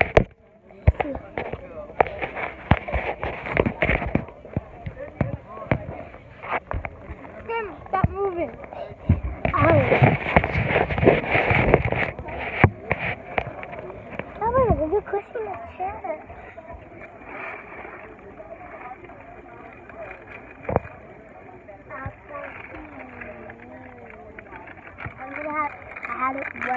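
Children's voices talking indistinctly close to the microphone, loudest in the middle, with frequent knocks and rubbing from a handheld phone being moved about.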